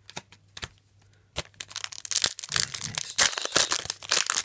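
A foil Yu-Gi-Oh! Star Pack 2014 booster wrapper being torn open and crinkled by hand. A few light clicks come first, then from about a second and a half in a loud, dense crackle of tearing, crumpling foil.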